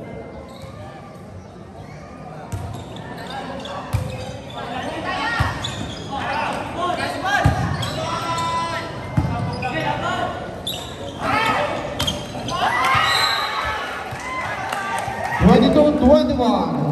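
Volleyball rally echoing in a large gym hall: sharp slaps of hands and arms hitting the ball every second or two, over players' shouts and crowd voices. The voices swell near the end as the point finishes.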